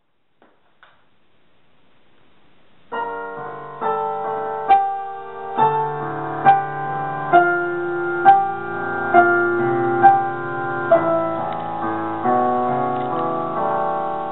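Digital piano playing the introduction to a song, chords with a clearly struck note roughly every second, starting suddenly about three seconds in after a couple of faint clicks.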